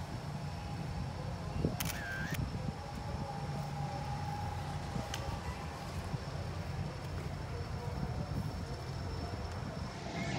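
Outdoor background noise: a steady low rumble with a faint hiss, and a short high sound about two seconds in.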